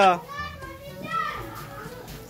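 Young girls' high-pitched voices: a loud call right at the start, then quieter scattered chatter.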